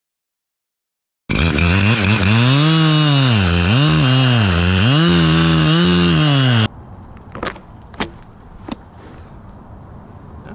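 Chainsaw cutting into a pine trunk, starting abruptly about a second in. Its pitch drops and rises again several times as the chain loads up in the cut. It stops suddenly, leaving a few sharp clicks.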